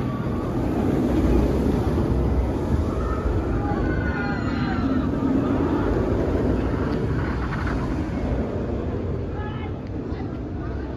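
Bolliger & Mabillard inverted roller coaster train running over the steel track overhead, a deep steady rumble that eases off toward the end as the train moves away. Faint voices, likely riders screaming, rise above it around the middle.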